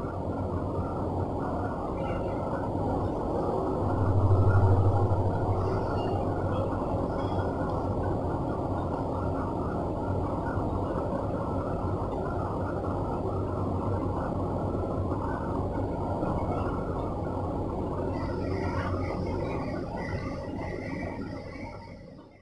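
A steady low mechanical rumble with a hum, like a running motor or machine. It swells briefly about four seconds in and fades away near the end.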